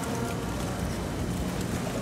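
Steady, even background noise of a fast-food restaurant dining room, a constant low rumble with no clear single event.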